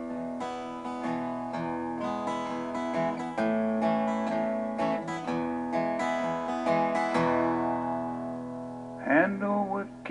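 Steel-string acoustic guitar strummed through a short run of chords with picked notes, the last chord left to ring out and fade from about seven seconds in. A man's voice comes in near the end.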